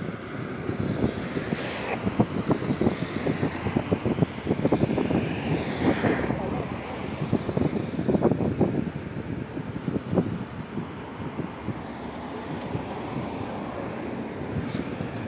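Wind buffeting a phone microphone on a moving vehicle, over the rumble of road and traffic noise.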